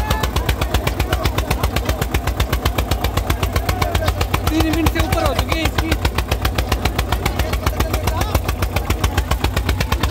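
Eicher 241 tractor's single-cylinder air-cooled diesel engine working under load, pulling a disc harrow through loose soil. It gives a rapid, steady exhaust beat of about ten firing pulses a second. Faint crowd voices are heard behind it.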